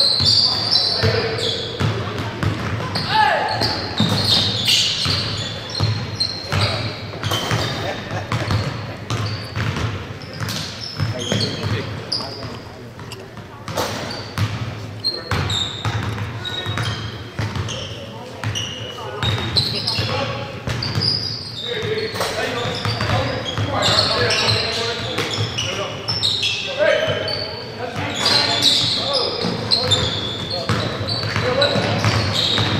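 Basketball game play in a large hall: a ball bouncing on a hardwood court, short high sneaker squeaks, and players' indistinct shouts, all echoing in the gym.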